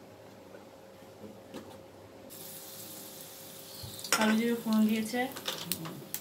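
Hot cooking oil in a nonstick kadai, quiet at first, then a steady faint sizzle from about two seconds in as an ingredient goes into the oil. A voice speaks briefly, loudly, about four seconds in.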